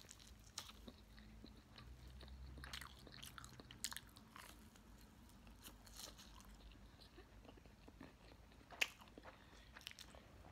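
Faint mouth sounds of a person biting and chewing a toaster waffle, with scattered small clicks and smacks.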